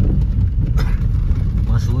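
Car driving over a rough unpaved track, heard from inside the cabin: a steady low rumble of engine and tyres, with a brief knock a little before one second in.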